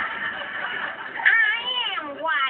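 A high-pitched, wavering voice wailing in a cat-like, meowing way. About a second in, it swoops down in pitch and back up.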